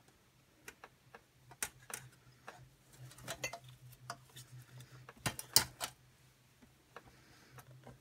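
Scattered light clicks and taps of a glass pane being pushed back into a picture frame and pressed into place, loudest about five and a half seconds in.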